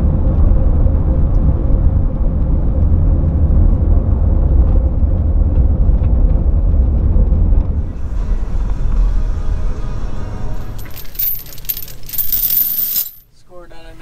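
A van driving on a gravel road, heard from inside: a steady, loud low road-and-tyre rumble with gravel rattling. About eight seconds in it gives way to a thinner sound with a strong hiss, which drops out briefly near the end.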